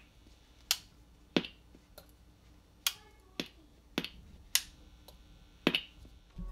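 A piece of metal tapped against a Telecaster's pickups, each tap heard through a small practice amp as a sharp click with a brief ring. There are about seven taps at uneven intervals. The tapping checks that each pickup is wired correctly and works in each switch position.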